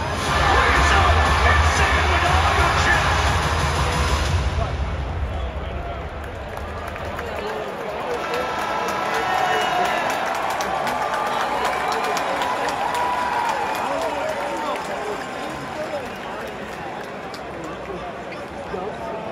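Music with a heavy bass beat over the arena sound system, cutting out about four seconds in, with the bass gone a few seconds later. What remains is the crowd in a large arena: many voices chattering, with scattered shouts and cheers.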